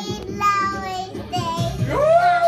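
A young child singing an improvised freestyle, holding long notes that slide up and down in pitch.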